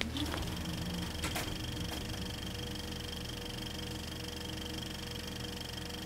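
A steady mechanical whirring hum with a few held tones, and a faint click or two a little over a second in.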